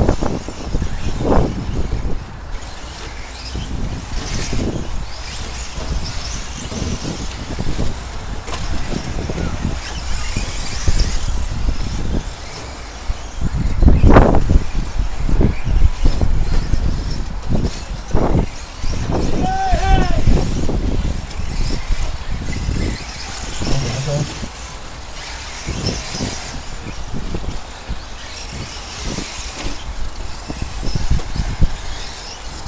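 Radio-controlled 1/10-scale short-course 4x4 trucks racing on a dirt track, their motors and tyres mixed with voices on the drivers' stand.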